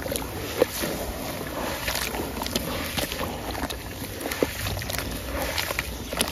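Hands kneading wet sand cement in a basin of water: continuous wet squishing and sloshing with gritty grinding. There are small clicks of grains throughout and a couple of sharper ticks.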